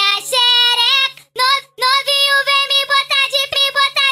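Funk carioca track in a breakdown: a high-pitched singing voice with the bass beat dropped out. The voice breaks off briefly about a second in, then carries on.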